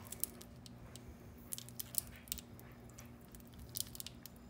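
Plastic squeeze bottle of lemon juice being squeezed again and again, giving faint, irregular crackles and squishes as the juice sputters out into a spoon.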